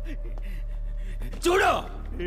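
A man's voice cries out once, short and loud, about one and a half seconds in, over a steady low hum.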